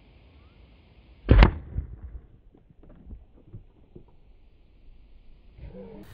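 Crossbow shot striking a balloon of thick non-Newtonian fluid (oobleck): one loud, sharp crack about a second in as the wide steel-tipped bolt punches through the balloon and into the wooden backplate behind it, followed by a few faint knocks.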